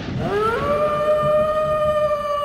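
A single pitched wail in a horror podcast's intro sound design. It slides up over the first half second, then holds steady on one note.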